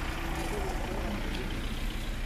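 Steady low rumble of an idling engine, with faint voices talking in the background.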